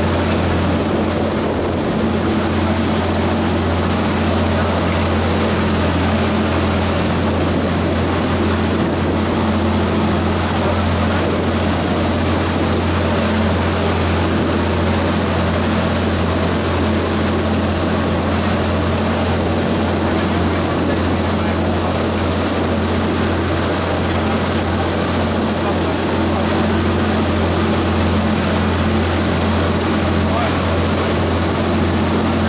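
A boat's engine running steadily under way: a constant low drone with an even hiss over it, unchanging throughout.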